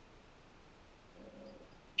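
Near silence in a pause between words, with a faint, short hum from a person's voice a little over a second in.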